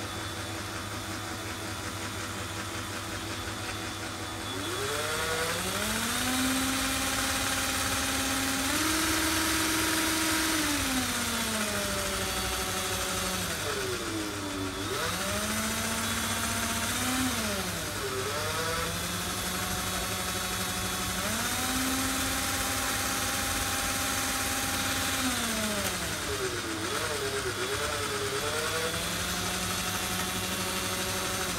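Electric drill spinning the drive shaft of a pair of homemade metal differential axles, its motor whining along with the whir of the gears. The pitch climbs, holds, and falls again several times as the drill's speed is varied.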